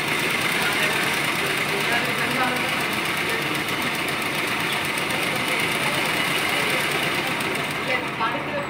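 Sewing machine running steadily and stitching through layered fabric.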